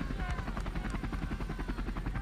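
Helicopter rotor chopping steadily in rapid, even pulses.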